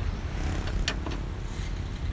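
Steady low rumble of wind on the microphone, with one sharp light click about a second in as the raised bonnet of the car is handled.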